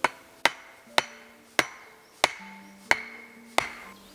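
An axe striking the top of a wooden stake to drive it into the ground: seven sharp wooden knocks, about one every two-thirds of a second.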